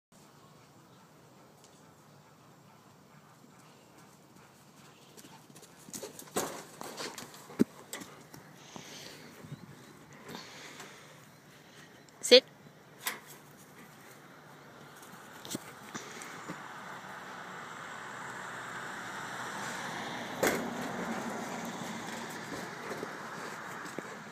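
German shepherd at a fence with a ball: scattered sharp knocks and thumps, one loud short sound about halfway through, then a rustling noise that builds steadily towards the end.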